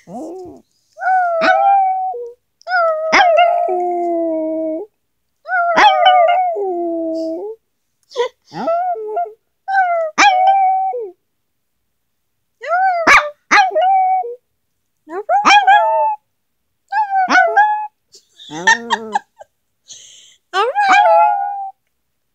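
Small long-haired dog howling in a string of about ten short, high-pitched howls, each a second or two long, several sliding down in pitch at the end.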